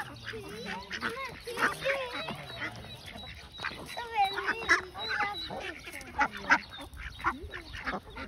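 Several mallard ducks quacking repeatedly, with short, overlapping calls.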